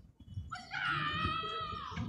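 A high-pitched whining call lasting over a second, wavering slightly and dropping in pitch at its end.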